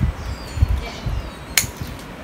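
Bonsai pruning scissors snipping through a small branch, one sharp click about three-quarters of the way in, among a few low dull thumps.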